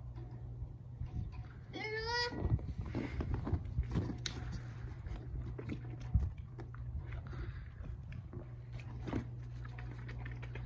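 Crunching in packed snow as feet and paws move about, with a brief wavering high-pitched cry about two seconds in.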